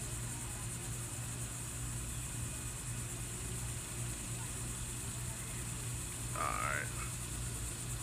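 Steady low background hum with a faint hiss. About six and a half seconds in, one brief high-pitched warbling call sounds.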